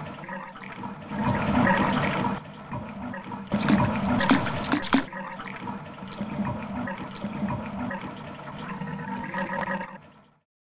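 Water sound effect of liquid rushing and draining, standing for treatment solution being emptied from a wood pressure-treating cylinder back into its storage tank. A brighter gush comes between about three and a half and five seconds in, and the sound cuts off suddenly at the end.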